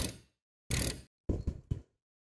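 Ratchet wrench being worked on the nuts of an exhaust pipe clamp: five short bursts of ratchet clicking, the last three in quick succession.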